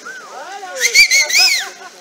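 People whooping and shouting in several short rising-and-falling cries, the loudest about a second in.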